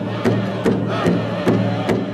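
Pow wow drum and singers: a large drum struck in a steady beat, about two and a half beats a second, under sliding high-pitched voices, with one vocal phrase about a second in.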